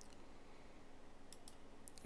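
Near silence: faint room tone with a few short, faint clicks in the second half.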